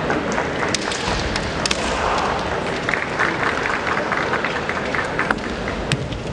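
Kendo bout: sharp knocks of bamboo shinai and stamping feet on a wooden floor, with a noisy stretch of shouting and clatter in the middle as the two fencers close in to grapple at close quarters.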